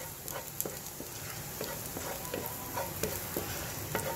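Minced garlic sizzling in hot oil in a frying pan while a wooden spatula stirs it, with small irregular ticks and scrapes from the spatula over a steady sizzle.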